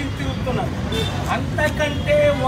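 A man speaking animatedly into press microphones, over a steady low background rumble.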